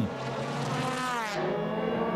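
DTM race car V8 engines at high revs, their buzzing note climbing and then dropping away as the cars go past.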